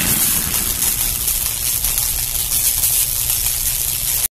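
Animated outro sound effect: a steady rushing noise with a low rumble and a high hiss.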